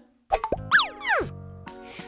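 Cartoon sound effect of a few quick falling pitch glides, followed by a short held musical chord.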